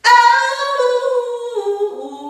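A woman sings a long wordless note that comes in suddenly and steps down to a lower pitch about one and a half seconds in. The voice echoes off the hard walls of a tiled bathroom.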